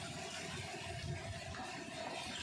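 Faint steady background noise with a few soft low bumps, and no distinct event.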